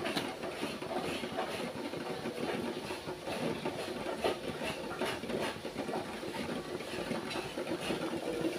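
Steel pot of water at a rolling boil on a gas stove, bubbling and crackling steadily.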